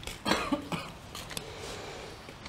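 A person coughing, a loud first cough followed by two or three shorter ones in quick succession.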